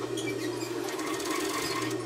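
Industrial overlock machine (serger) stitching, a rapid, even mechanical clatter over a steady motor hum, as it sews and trims elastic onto the edge of knit fabric.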